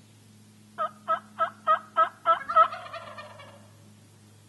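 Wild turkey calling: a run of about seven evenly spaced notes, some three a second and growing louder, breaking into a rattling, gobbling trill that is the loudest part and then fades.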